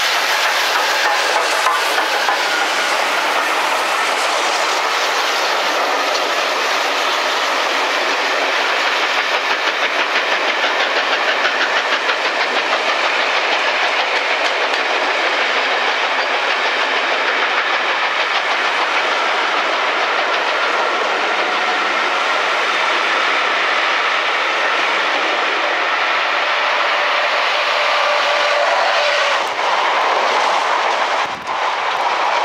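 A steam-hauled passenger train, LNER Thompson B1 class 4-6-0 No. 61306 Mayflower at the head of a rake of coaches, passing close by. It makes a loud, steady rolling of wheels on rails as the carriages go past.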